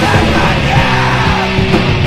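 Loud, dense rock music with distorted band instruments and yelled vocals, playing continuously.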